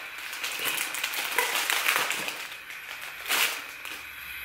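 Clear plastic packaging crinkling and rustling as it is handled, with a louder crinkle about three seconds in.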